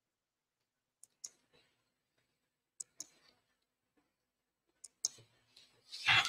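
Computer mouse clicking in three quick double clicks about two seconds apart, in a quiet room.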